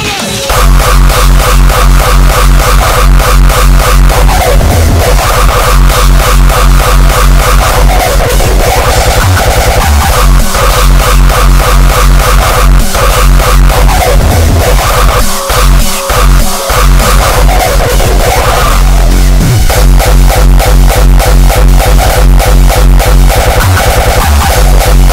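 Hardcore electronic music playing loud: a heavy distorted kick drum hammers a fast, steady beat under a buzzing synth riff. The kick drops out for brief breaks a few times around the middle of the passage, then comes back in full.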